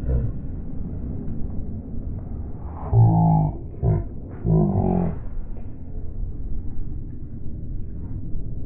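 A man barking like a dog at a dogfish, three short 'woof' calls in the middle, over a steady low rumble.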